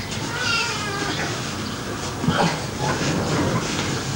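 A Siamese cat meowing: one drawn-out, wavering call about half a second in.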